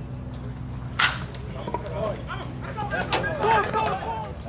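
A wooden baseball bat striking a pitched ball with a single sharp crack about a second in, the ball put in play, followed by players' voices calling out.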